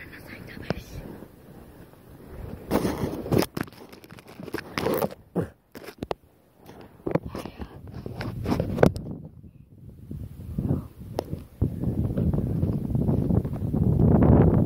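A person whispering close to the microphone, with rustling and sharp knocks from the camera being handled, clustered about three to five seconds in.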